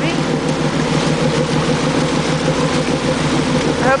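Boat's motor running steadily at low speed, with water churning and splashing in the wake behind the boat.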